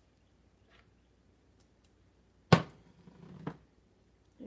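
A metal serving spoon knocks sharply once against kitchen dishware, followed by softer scraping and a clink about a second later, as food is scooped out for a layered casserole.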